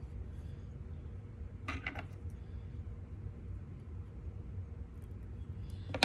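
Faint clicks and handling noises as hands work tying materials and a thread bobbin on a jig-tying vise, a short cluster about two seconds in and a few weaker ones near the end, over a low steady room hum.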